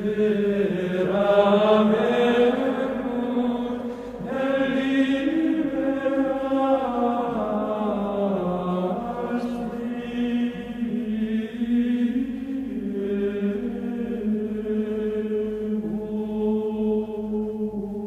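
Background music of slow vocal chant: long, held sung notes that move slowly in pitch, with a short break about four seconds in before a new phrase.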